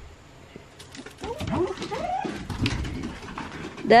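A dog whining in a few rising-and-falling, howl-like calls, starting a little over a second in, with scattered sharp clicks.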